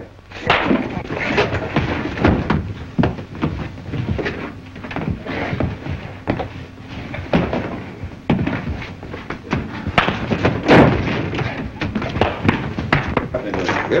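A fistfight in an old film soundtrack: a string of irregular thuds and slams as blows land and bodies hit the floor and furniture, the heaviest one about eleven seconds in, with men's voices grunting in the scuffle.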